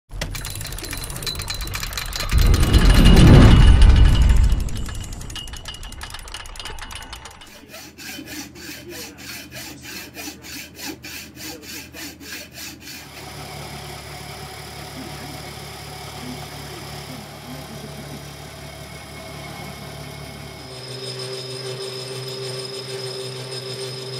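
A loud low rushing sound swells and fades in the first few seconds. Then a hacksaw cuts a steel bar in quick, even strokes, followed by a metal lathe running steadily as it turns the steel bar, its tone changing near the end.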